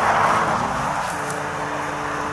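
Road noise of a moving vehicle: a steady hiss of wind and tyres, louder in the first half second, over a low, even engine hum.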